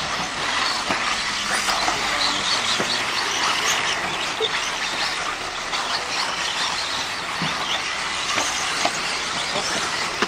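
Radio-controlled 4WD off-road buggies racing on a dirt track: a steady mix of high motor whine and tyre and dirt noise, with occasional short clicks.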